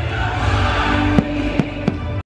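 Music of a fireworks show, with three sharp firework bangs in the second half, about a third of a second apart.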